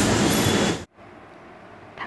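A loud, steady rushing noise that cuts off abruptly just under a second in, leaving only faint room tone.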